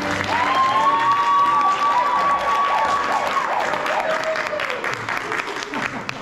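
Audience applauding in a large hall, with one long drawn-out cheer held over the clapping for the first few seconds.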